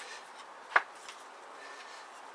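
A single short knock about three-quarters of a second in, from plywood being handled, over quiet room noise.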